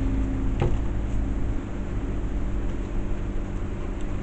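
A steady low mechanical hum in the room, with one light knock about half a second in as a paint cup is set down on the table.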